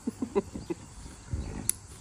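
French bulldog grumbling and growling in short bursts in protest at having its nails clipped, with a low growl about halfway. Near the end there is one sharp click, likely the nail clippers.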